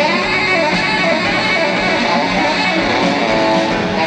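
Live band playing an instrumental passage, with electric and acoustic guitars to the fore.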